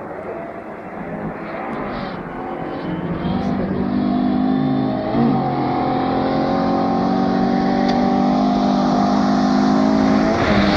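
Rally car engine on a gravel forest stage, heard approaching and growing steadily louder, its note dipping briefly in pitch about five seconds in before climbing again as it keeps accelerating.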